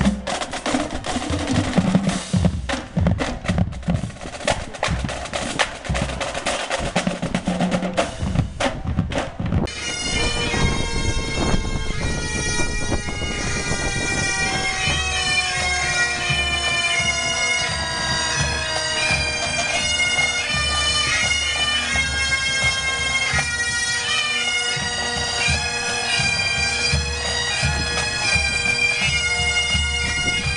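Marching band drums beating a cadence for about the first ten seconds. Then, abruptly, a pipe band: Highland bagpipes play a melody over their steady drones, with a bass drum beating under them.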